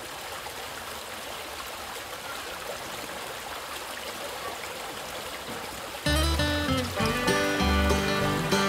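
Shallow stream running over rocks and gravel, a steady trickling rush of water. About six seconds in, music with a bass line starts suddenly and becomes the louder sound.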